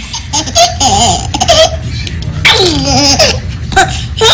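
A baby laughing in several high, excited bursts.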